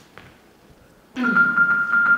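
Live keyboard music starts suddenly about a second in, after near-quiet faint taps. It is a steady held high note over quickly repeated notes.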